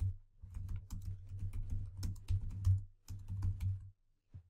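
Typing on a computer keyboard: a quick run of key clicks, with a brief pause about three seconds in.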